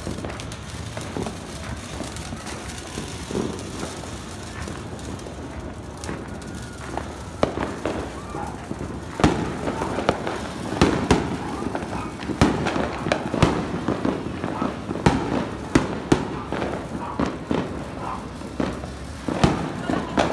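Fireworks going off: a steady crackling hiss at first, then from about seven seconds in a run of sharp, irregular bangs and cracks, several a second at times, with people talking underneath.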